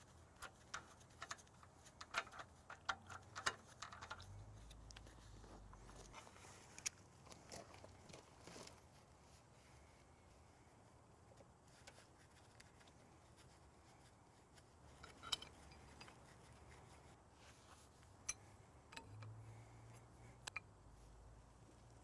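Faint metallic clicks and clinks of wrenches against steel hydraulic hose fittings as a hose is worked loose and moved. There is a quick run of them in the first few seconds, then a few single ones.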